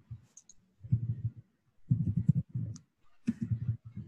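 Typing on a computer keyboard: keystrokes clicking in several short bursts as a line of code is typed.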